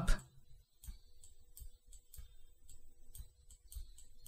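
Faint, irregular clicks of a computer mouse, a dozen or so spread over a few seconds, over quiet room tone.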